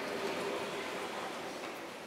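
Steady rushing room noise of a large indoor hall, with no distinct events, slowly fading down.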